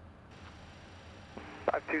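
Steady low background noise. A thin hiss joins about a third of a second in, then an air traffic controller's voice comes over the radio for the last half second or so, beginning a call to the aircraft.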